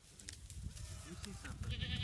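A goat kid bleating once, short, high and quavering, near the end, over a low rumble.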